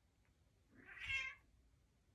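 A cat gives a single short meow about a second in while two cats play-wrestle.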